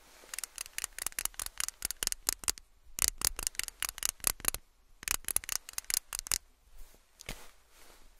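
Close-up handling of a makeup pencil: quick scratchy clicks and taps, several a second, in three runs, then a single click near the end.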